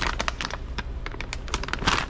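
Stiff plastic pouch of laundry detergent pods being handled, crinkling and clicking in a rapid irregular run, loudest near the end.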